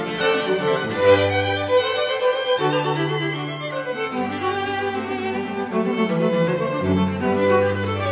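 String quartet playing live: violin lines move above long held cello notes, each low note sustained for one to three seconds.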